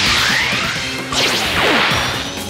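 Two cartoon whoosh sound effects: the first rising in pitch, the second, about a second in, sweeping downward. Music plays underneath.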